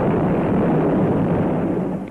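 Loud explosion sound effect: a steady rush of noise that dies away near the end.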